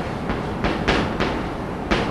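Chalk tapping and scraping on a blackboard as a small figure is drawn: several sharp taps, roughly a third of a second apart.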